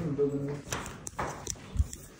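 Footsteps in sandals slapping on a hard stone floor: four or so sharp steps, starting under a second in, after a brief voice at the start.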